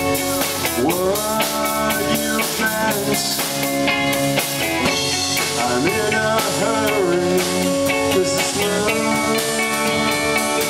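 Live rock band playing: electric guitar, electric bass and drum kit, with a male voice singing over it.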